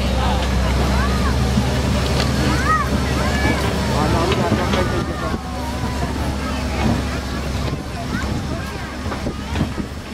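Farm tractor engine running steadily as it pulls the hay wagon, its hum easing off about halfway through, with passengers' voices chattering over it.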